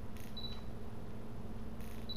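Digital camera taking a photo: a soft shutter click followed by a short high beep, then another shutter click near the end. A low steady room hum sits underneath.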